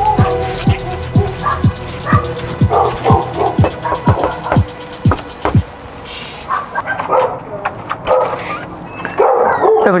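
Background music with a steady deep beat, about two thuds a second, that stops a little past halfway. A dog then barks several times behind the door.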